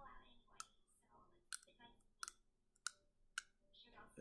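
Five sharp clicks, spaced roughly half a second to a second apart, over faint low speech.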